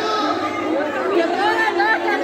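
Several people talking and calling out at once, their voices overlapping, growing busier and louder in the second half.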